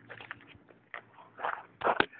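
Faint handling noise from a handheld camera: scattered soft clicks and rustles as it is moved and covered, with a louder rustle near the end.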